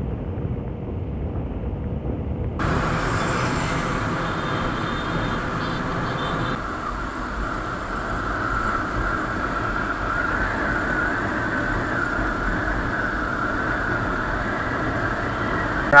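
Motorcycle riding: the engine running steadily under wind and road noise. About two and a half seconds in, the sound changes abruptly to a fuller, steadier hum of traffic and road noise.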